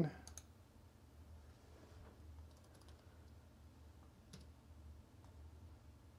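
A few faint, sparse clicks of a computer mouse at a desk, over a low steady hum.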